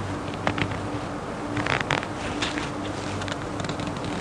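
A steady low buzz or hum with scattered short clicks and crackles, busiest about halfway through.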